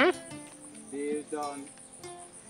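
Insects, such as crickets, chirring in the background with a steady high-pitched pulsing; a short pitched sound, likely a voice, comes about a second in.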